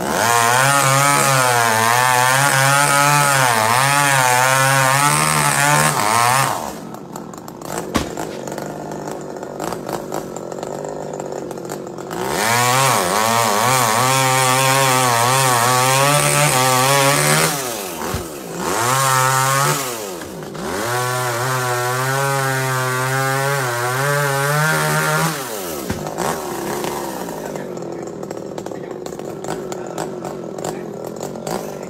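Two-stroke chainsaw cutting tree limbs at full throttle in three long runs of about five seconds each, its pitch wavering under load. Between the runs it drops back to idle, with two short revs in the middle.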